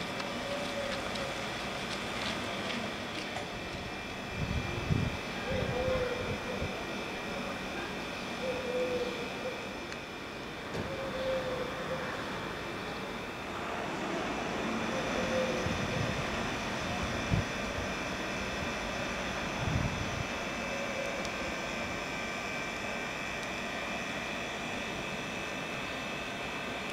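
Construction machinery running steadily at a street-works site, with a few low thuds and faint distant voices.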